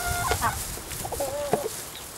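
Domestic hens clucking: a short held call at the start, then a couple of short rising-and-falling clucks a little past halfway.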